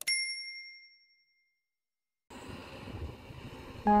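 A mouse click followed by a single bright bell ding that rings out for about a second and a half: the click-and-bell sound effect of a subscribe-button animation. After a silent gap, faint background noise comes in, and music starts just before the end.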